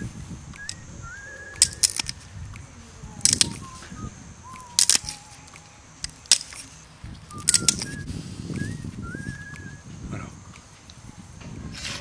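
Sharp clicks as small flakes snap off the edge of a flint piece pressed with a copper-tipped pressure flaker: about eight clicks spread through, several in quick pairs. Birds chirp in the background.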